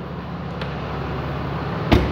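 A 6.7-liter Cummins diesel idling steadily, slowly getting a little louder, with one sharp thump just before the end.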